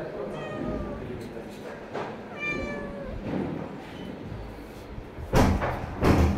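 A hungry cat meowing as it looks for food: a shorter call near the start and a longer one about two seconds in. A loud thump comes near the end.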